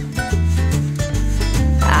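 Song backing of bass and drums playing between sung lines; the singer's voice comes back in near the end.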